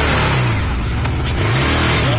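Off-road vehicle engine revving up and down twice as it pushes through tall brush, over a steady rushing noise of vegetation scraping along the body.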